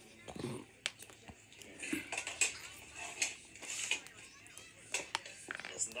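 A faint, indistinct voice mixed with scattered sharp clicks and rustling.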